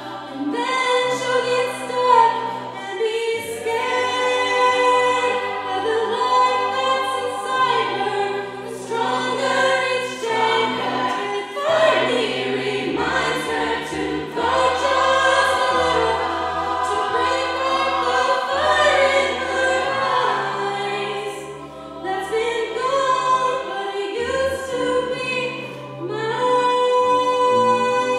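A cappella group singing: a female soloist on a microphone over sustained backing chords from the group and a low sung bass line that moves from note to note. The singing eases off briefly a little past the middle before building again.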